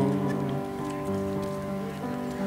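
A short instrumental gap between sung lines of a folk song: a few notes held steady, softening slightly, with a harmonica played from a neck rack.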